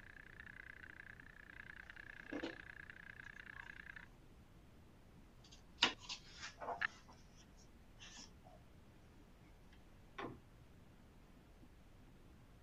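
Faint, fluttering steady tone that cuts off suddenly about four seconds in, then a few scattered soft clicks and knocks.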